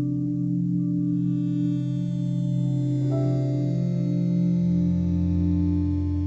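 Slow ambient meditation music made of long held low drone tones. A new, higher note comes in about three seconds in, and a deeper tone joins near the end.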